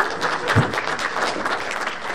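Audience applause, many hands clapping at a steady level.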